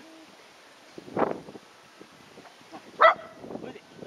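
A dog barking twice: one bark about a second in and a louder, sharper one about three seconds in.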